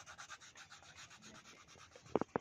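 Faint scratchy rubbing of a plastic crayon shading on paper, in quick, even back-and-forth strokes.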